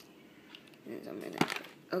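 Handling noise of small hard objects: a short rustle about a second in, then two sharp clicks about half a second apart.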